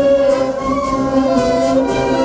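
Wind band playing a tango: held chords from clarinets, saxophones and brass, with a light high percussion tick about twice a second.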